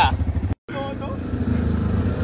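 ATV (quad bike) engine running steadily. It drops out completely for an instant just after half a second in, then carries on as the quad rides along a dirt track.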